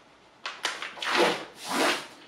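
A large sheet of pattern paper being folded in half, with hands sweeping along the crease to press it flat: a short rustle, then two long rubbing swishes, the second the loudest.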